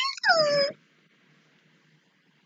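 A woman's short, high-pitched excited squeal that trails into a whine falling in pitch, muffled by hands over the mouth, stopping within the first second.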